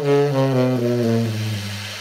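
Tenor saxophone playing a short phrase that steps downward in the low register with a soft, airy subtone. The last note is held and fades away.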